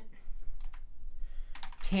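Typing on a computer keyboard: a few separate keystrokes.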